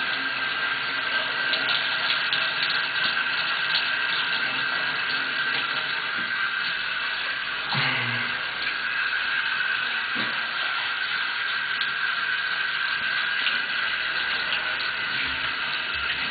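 Water running steadily into a bath, an even rushing that carries on without a break.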